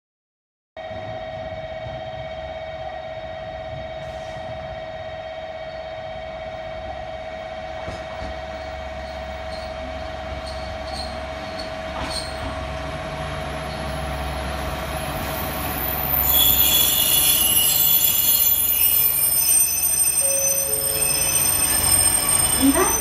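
JR Kyushu KiroShi 47 'Aru Ressha' diesel railcars approaching and running past at close range. The low rumble of engine and wheels grows steadily louder, and from about two-thirds of the way in, high squealing from the wheels on the rails becomes the loudest sound. A steady high tone sounds through the first part.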